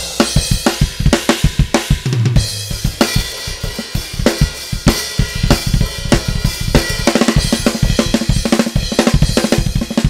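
Drum-kit samples, with kick, snare, hi-hat and cymbal, finger-drummed live on the pads of an Akai MPC Studio in a fast, busy groove of rapid hits.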